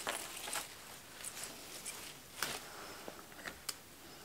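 Faint, scattered rustles and light ticks of hands handling flower stems and moss in an arrangement.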